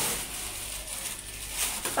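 Thin plastic grocery bag rustling and crinkling as it is handled and lifted, a steady crackly noise with a few sharper crinkles near the end.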